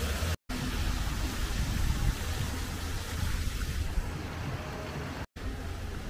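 Steady outdoor city-street noise picked up by a handheld camera's microphone, a rumbling hiss with no clear single source, cut to silence for an instant twice: about half a second in and near the end.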